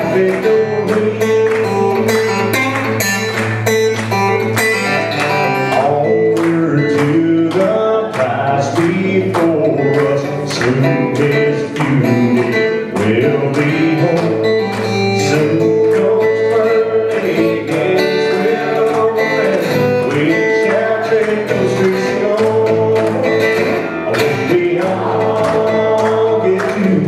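A man singing a gospel song while strumming an acoustic guitar in a steady rhythm.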